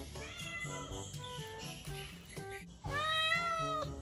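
A kitten meowing: one loud meow about a second long near the end, and a fainter rising mew near the start, over background music.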